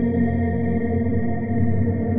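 Ambient meditation music of sustained, steady low tones, with nothing sudden and little in the high range.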